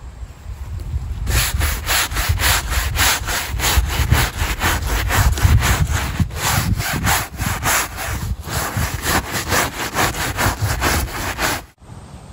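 Scrub brush scrubbing mold off a trampoline's mat and netting in quick back-and-forth strokes, about three or four a second. It starts about a second in and cuts off just before the end.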